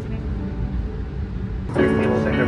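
Steady low rumble of a moving vehicle, heard from inside it. Near the end it cuts abruptly to music.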